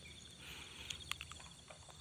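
Faint, steady, high-pitched chirring of insects in a ripening rice paddy, with a couple of soft clicks about a second in.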